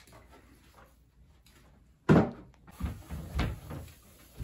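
A single sharp knock about halfway in, then a few dull thumps as the doors of a wooden wardrobe knock in their frames while being wiped down with a cloth.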